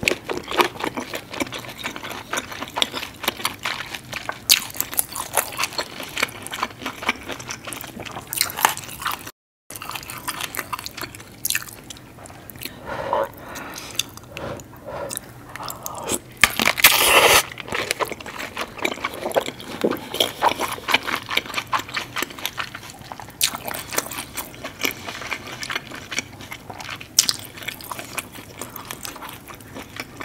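Close-miked biting and chewing of an andouille sausage coated in seafood boil sauce: continuous wet, sticky mouth clicks and smacks, with one louder bite a little past halfway. The sound drops out completely for a moment about a third of the way in.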